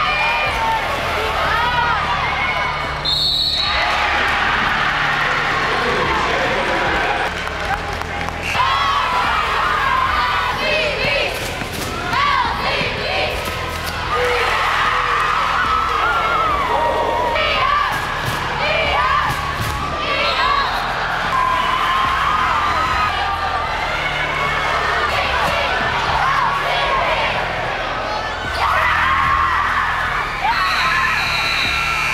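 Live basketball game sound in a gym: a ball dribbling on the hardwood court among players' and crowd's shouting and cheering.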